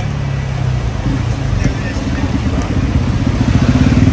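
A motorcycle or scooter engine running close by, its low rapid pulsing growing louder from about a second in, over street traffic.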